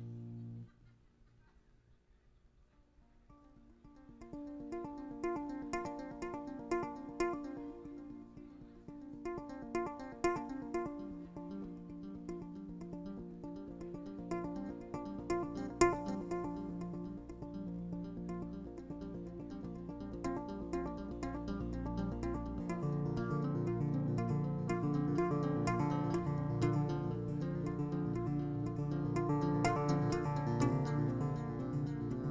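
Solo electric bass guitar playing: a held chord stops right at the start, and after a few quiet seconds a piece begins with many quick, ringing plucked notes high on the neck. A lower bass line joins about a third of the way in and grows fuller about two-thirds of the way through.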